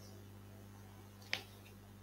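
Faint steady low hum with a single short, sharp click about a second and a quarter in.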